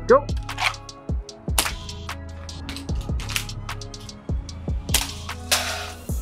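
Airsoft pistol fired in a string of sharp single shots at uneven intervals, over background music.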